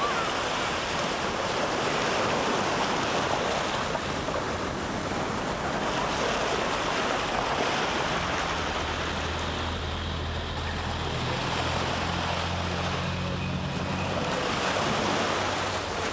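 Small waves breaking and washing up on a sandy beach in a steady surf wash. About halfway through a faint low steady hum joins in and fades just before the end.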